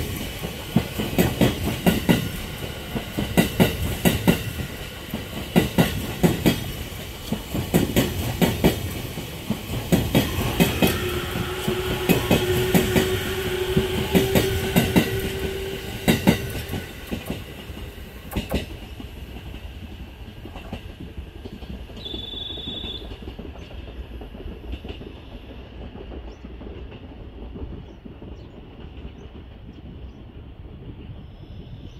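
E657 series electric train passing at low speed, its wheels knocking over the rail joints in a steady slow rhythm. A low steady tone sounds for a few seconds midway. The knocks die away after about 18 seconds, leaving a fainter steady background.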